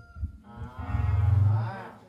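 A single long, low, drawn-out moo-like call, lasting about a second and a half and starting half a second in.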